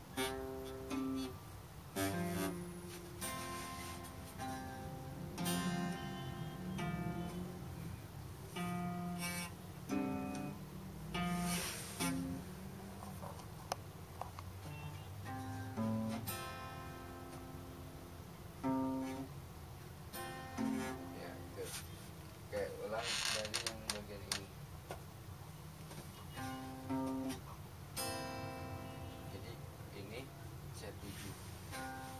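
Nylon-string classical guitar strummed one chord at a time, a chord every second or two with uneven pauses between. This is a beginner practising chord changes, such as the F chord, while shifting fingers on the fretboard.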